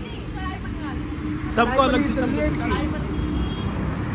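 A vehicle's engine running steadily with a low rumble and a steady hum, under men's voices.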